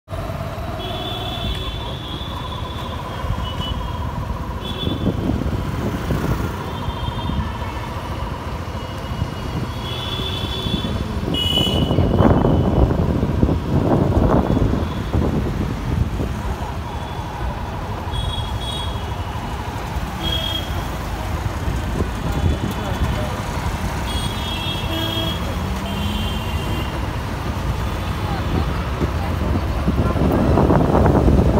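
Busy street traffic of cars, auto-rickshaws and motorbikes running steadily, with short horn toots every few seconds. A vehicle passes louder about twelve to fourteen seconds in.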